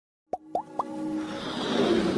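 Animated logo intro sound effects: three quick pops, each sliding up in pitch, about a quarter second apart, then a whoosh that swells up over a musical backing.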